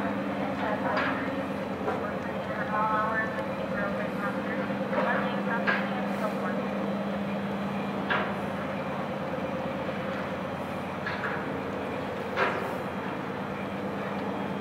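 Steady low hum of the passing tug-and-barge's engines, with people talking nearby and a few short knocks.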